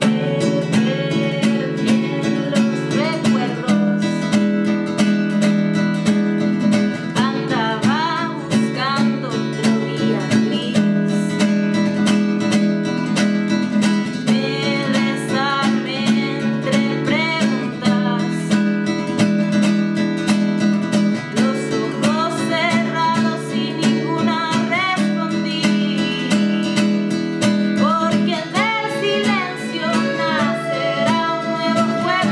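Piano accordion holding sustained chords under a strummed acoustic guitar, with a woman singing in Spanish in phrases that come and go over the steady accompaniment.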